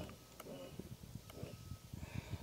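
A few faint clicks of rocker switches being pressed on a boat's console switch panel, over a low rumble.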